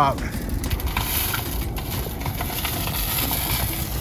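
Homemade diesel-fuelled smudge pot burning hard, a steady rumbling fire noise with faint crackles as the flames reach up and out of its smokestack.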